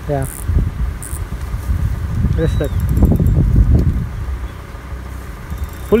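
Low wind rumble on the microphone, with faint voices. Near the end comes a fast, even ticking from a spinning reel as a hooked fish is played on a bent rod.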